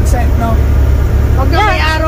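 Steady low drone of a semi-truck's engine and tyres heard inside the cab while cruising at highway speed, with a man talking over it.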